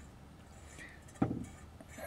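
A quiet stretch with one short thump a little over a second in.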